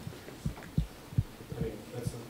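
A few soft, low thumps, about four spread over two seconds, with faint voices in the room behind them.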